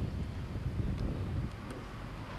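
Wind buffeting the camera microphone outdoors, a low, uneven rumble, with a couple of faint ticks.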